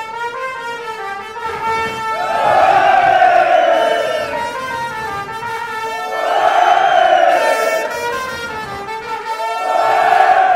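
Brass band holding long sustained notes while a party crowd shouts along in three rising-and-falling swells, a few seconds apart.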